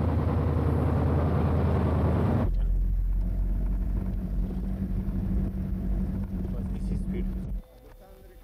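A motor vehicle engine running, a loud steady low rumble. The sound changes abruptly about two and a half seconds in to a steadier, deeper hum, then cuts off shortly before the end.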